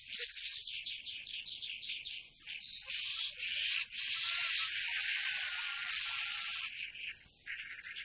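Small birds chirping and twittering: a quick run of high chirps, then a louder, dense twittering from about three seconds in that breaks off briefly near the end before the chirps return.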